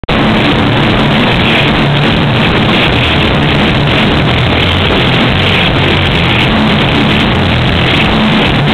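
Black metal band playing live, a loud, dense wall of sound that cuts in suddenly right at the start.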